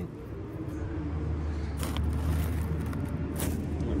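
A running motor with a steady low hum, and a couple of brief clicks, one about halfway through and one near the end.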